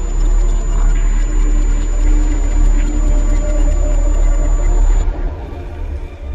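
Logo intro music: a loud, sustained deep bass rumble with a thin steady high tone over it, which stop about five seconds in and let the sound fade away.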